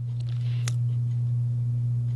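A steady, low-pitched electrical hum holding one unchanging pitch, with nothing else over it.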